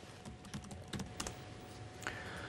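A few light, irregular computer keyboard keystrokes over a faint steady hum.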